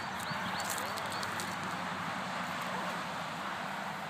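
Wooden-sided pull wagon with two children aboard rolling over grass and dirt, with footsteps alongside: a steady rustling clatter with scattered light clicks in the first second or so.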